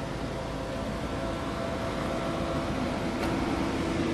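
Steady background hum and hiss with a faint steady tone, growing slightly louder toward the end; no sudden sounds.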